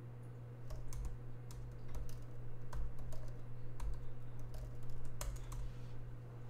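Typing on a laptop keyboard: irregular key clicks with soft low thuds, starting under a second in and running for about five seconds, over a steady low hum.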